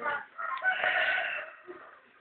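A rooster crowing: one call of about a second, starting about half a second in.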